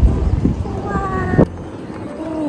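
Wind buffeting the microphone on a moving ride, with a high, drawn-out vocal exclamation from a person near the middle that is cut off abruptly about one and a half seconds in, after which the wind noise is much quieter.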